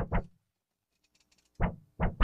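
A person's voice in a few brief fragments at the start and again near the end, with near silence between.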